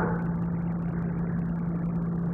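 Room tone: a steady low hum over a faint hiss.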